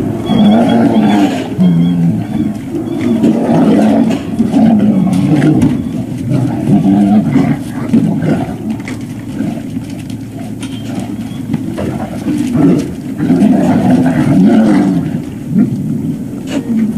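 Great Dane puppies eating from steel bowls in a raised feeder: loud, uneven chewing and gulping, with short clicks of teeth or bowls.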